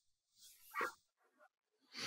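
Near silence with room tone, broken once a little under a second in by a single very brief, quiet call-like sound.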